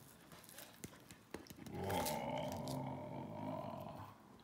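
A few faint clicks and taps, then about two seconds in, a person's long drawn-out vocal sound, held for about two seconds with slowly bending pitch.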